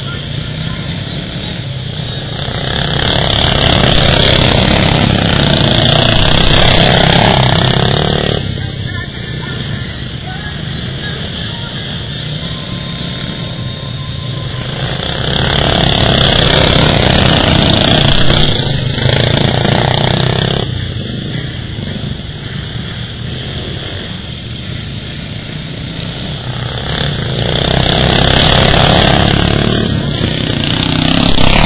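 Engines of racing lawn mowers running hard as they lap a dirt track. The sound swells loudly three times, about every twelve seconds, as the pack passes close by.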